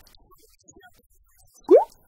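A short, rising "bloop" pop sound effect, like a checklist item popping onto the screen, comes near the end over quiet background music.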